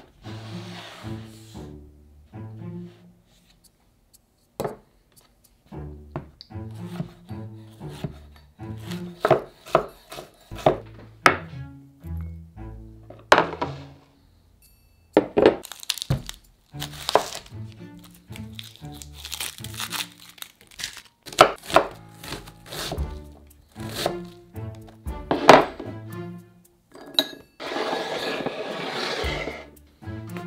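Background music with a bass line, over irregular knocks and knife strokes on a wooden cutting board as a red onion is cut. A longer rustling stretch comes near the end as a bunch of cilantro is handled.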